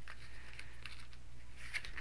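YKK zipper on a nylon laptop bag's pocket being pulled open by hand: faint, scattered small ticks from the zipper teeth and the fabric.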